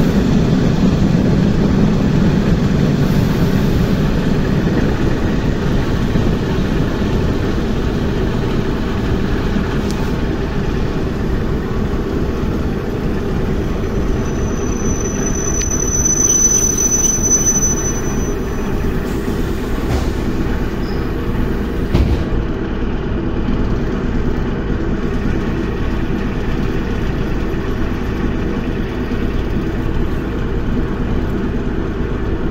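ER2R electric multiple unit slowing into a platform stop: a steady rumble of wheels and running gear, heard through an open window, easing off as it brakes. A brief high-pitched squeal comes about halfway, likely the brakes, with a few sharp clicks after it.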